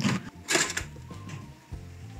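Serrated bread knife sawing through the crust of a day-old loaf: one short crunchy rasp about half a second in, then only a faint low hum.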